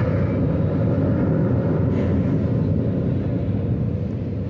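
Low, steady rumbling drone with no melody, from the backing track of a school dance-drama.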